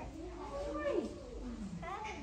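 Voices with pitch that slides up and down, in the sing-song manner of a picture book read aloud to young children.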